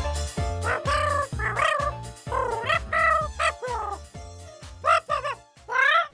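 Cartoon score music with a steady bass line under a bouncing, sliding lead melody in short gliding phrases. It thins out briefly near the end, then comes back with a rising swoop.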